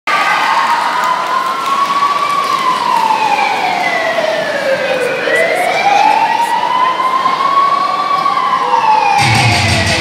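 Police siren sound effect played over a sound system, wailing slowly up and down in two long rises and falls. Rock music with guitar comes in near the end.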